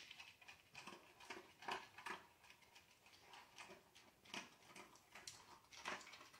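Dog eating dry kibble from a stainless steel bowl: faint, irregular crunching and clicking, a few bites a second.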